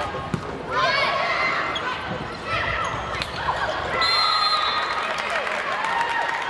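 Volleyball rally in a gym: sharp slaps of hands hitting the ball, with players shouting and calling on court. About four seconds in there is a steady high tone lasting about a second.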